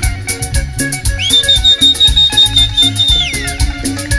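Live cumbia band playing: a quick, steady percussion tick over a bass line, with a long high note held for about two seconds that slides up into place and falls away near the end.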